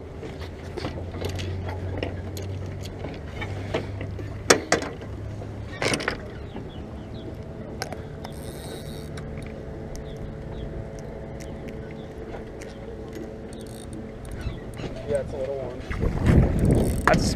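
Steady hum of a distant boat engine across the lake, its pitch shifting up about six seconds in, with two sharp knocks on the wooden dock boards as the bowfin is handled.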